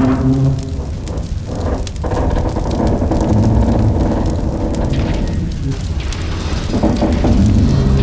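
Film score music mixed with sound effects of a large fire burning, over a continuous low rumble.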